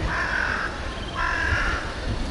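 A bird giving two harsh, drawn-out calls, the second beginning about a second in, over low street rumble.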